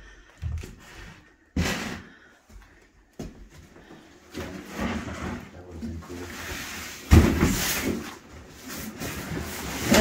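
A large cardboard box being handled and its flaps pulled open: scattered knocks, then rustling and scraping, with a louder scrape about seven seconds in.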